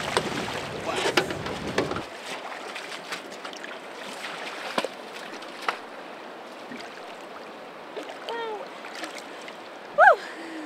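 Water splashing as a hooked steelhead thrashes in a landing net beside a boat, over wind rumble on the microphone. After about two seconds the rumble stops abruptly and a softer wash of river water remains, with a few sharp splashes as the fish is held in the shallows.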